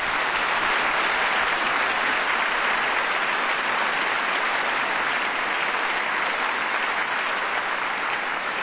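A large audience in a big concert hall applauding, a dense and steady clapping that holds at a full level throughout.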